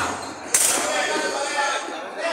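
A sharp thud of a football being kicked about half a second in, with players shouting around it.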